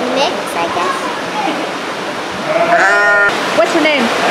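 A sheep bleating: one wavering call about two and a half seconds in, with a shorter call near the end, over a steady rushing background noise.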